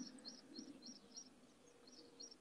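Faint bird chirping: a run of short, high notes repeated about four times a second, pausing briefly in the middle.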